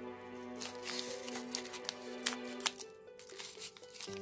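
Foil trading-card pack wrappers crinkling in the hand as their tops are snipped open with scissors, a string of short irregular crackles and clicks. Background music with held tones plays underneath.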